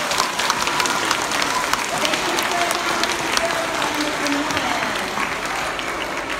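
Applause from a seated crowd of schoolchildren, many irregular hand claps, with voices chattering underneath.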